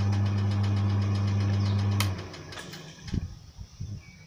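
A groundnut plucking machine running with a steady hum and a fast, even ticking, which cuts off suddenly about two seconds in. A few low thumps follow.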